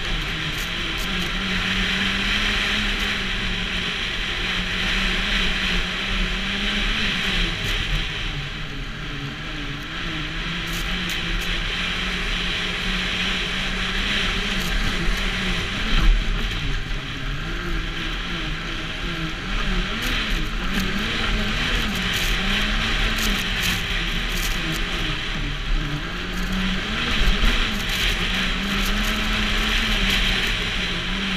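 Snowmobile engine running at riding speed, its note wavering up and down with the throttle, over a steady rushing hiss. There is a brief knock about halfway through.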